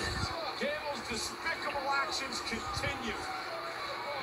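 Faint audio of a televised wrestling broadcast: a commentator talking, with a few dull thumps.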